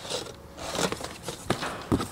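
A sheet of cardboard being lifted and moved by hand, rustling and scraping, with two sharp knocks in the second half.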